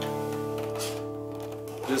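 Ibanez copy of a Gibson Hummingbird acoustic guitar in double drop D tuning, an open chord strummed with the fingernails left ringing and slowly fading. A voice starts near the end.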